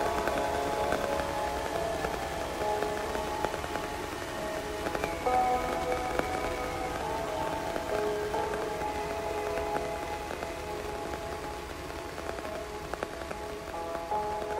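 Dark ambient electronic music: held, slowly shifting synth drone chords over a steady hiss with scattered crackles, gradually getting quieter.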